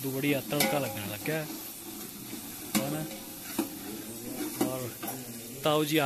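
A ladle stirring pumpkin curry in a large aluminium pot on a gas stove, over a steady sizzle, with a few sharp clinks of the ladle against the pot.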